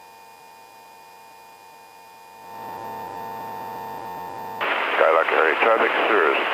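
Aircraft headset intercom audio: a steady electrical hum with the cabin noise held back. About two seconds in, the channel opens with a rise in hiss. Near the end a voice comes through, thin and cut off in the treble like a radio transmission.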